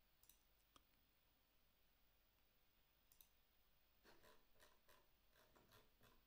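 Near silence with faint computer mouse and keyboard clicks: a few isolated ones, then a quicker run in the last two seconds.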